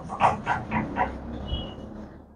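A dog barking in a quick run of about four short yaps within the first second, quieter than the nearby talk.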